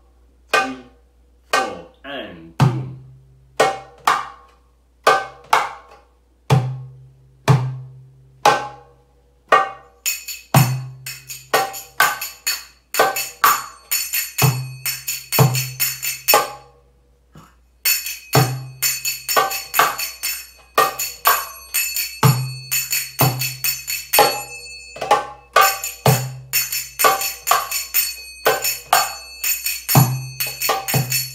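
Darbuka (goblet drum) playing the Wahda Kabira 8/4 rhythm, deep doum bass strokes among sharper tek strokes. About ten seconds in, brass finger cymbals (zills, sagats) join with a fast ringing 3-7-3-3-7 pattern over the drum. Both break off briefly about two thirds of the way through, then carry on.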